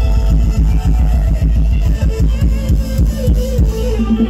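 Loud live band music through PA speakers for Thai ramwong dancing, dominated by heavy booming bass with a quick, steady beat.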